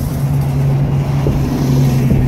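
City bus engine running as the bus passes close by, a steady low hum over street traffic.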